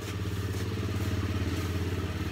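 A small engine running steadily nearby, a low even hum with a fast regular pulse, growing a little louder in the first half second.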